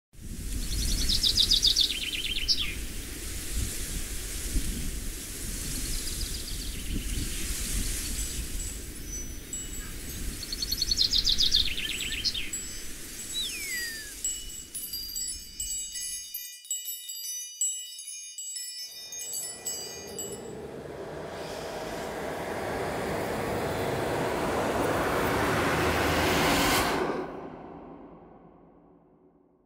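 Dark atmospheric intro soundscape: a low rumbling wind-and-rain-like bed with two short high cries, then a passage of high ringing chime tones, then a swelling noise that builds for several seconds and cuts off suddenly near the end.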